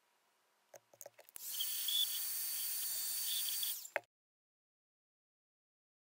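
A few light clicks, then about two and a half seconds of loud, steady rushing-air hiss with faint high whistling tones in it, which cuts off abruptly.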